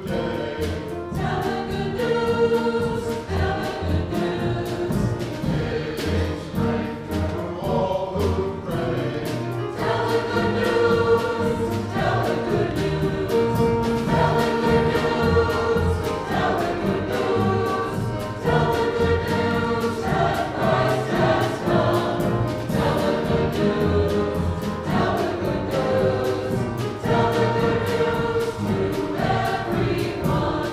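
Mixed church choir singing with instrumental accompaniment, the voices holding long chords over repeated low bass notes.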